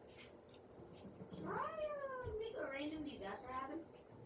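A cat meowing twice: a long call that rises and then falls about a second and a half in, followed at once by a second, wavering call that ends just before the close.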